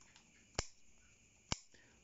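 Two short, sharp snips about a second apart: steel bonsai scissors cutting thorns off a bougainvillea stem cutting.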